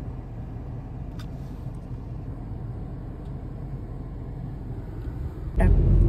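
Car cabin noise: a steady low rumble of the engine and tyres heard from inside a moving car. Half a second before the end the rumble suddenly becomes much louder.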